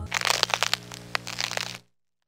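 Dense crackling and clicking over a steady low hum, which cuts off suddenly near the end.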